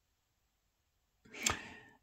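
Silence, then a little over a second in a brief in-breath with a sharp mouth click in it, fading out just before speech resumes.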